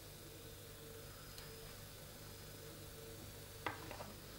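Quiet room tone, a steady faint hum and hiss, with one faint click about a second and a half in and two sharper small clicks near the end.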